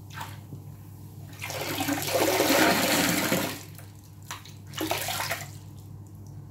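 Hands swishing a sponge through sudsy rinse water in a ceramic sink: one long slosh that swells and fades from about a second and a half in, then two shorter splashes near the end as the sponge comes up out of the water.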